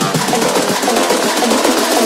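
Background song, in a stretch without vocals, with a busy drum pattern: fast snare-like hits over an electronic backing.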